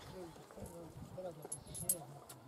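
Indistinct voices talking in the background, with a brief sharp click near the end.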